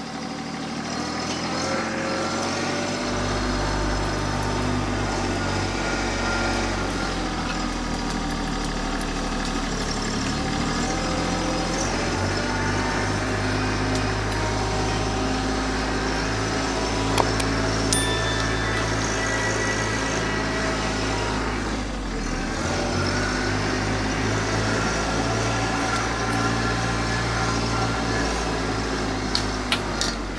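TYM T264 compact tractor's diesel engine running steadily under hydraulic load while the front loader and grapple work, its note dipping and recovering a couple of times. A couple of brief sharp clicks come about halfway through.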